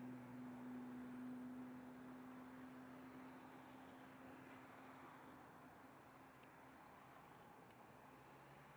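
Near silence: a faint, steady low hum over light hiss, slowly fading away.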